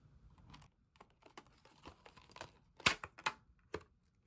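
Clear plastic packaging crinkling and clicking as hands slide a set of washi tape rolls out of its sleeve, in small scattered clicks with two louder snaps about three seconds in.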